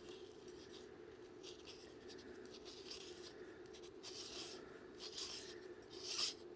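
Faint soft rubbing of a plastic harmonic drive's gear rings being turned by hand, in a few short scrapes, over a steady low hum.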